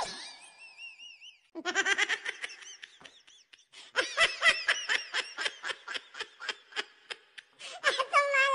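Children laughing hard in rapid, repeated bursts, with a short high squeal in the first second and a brief lull about three seconds in.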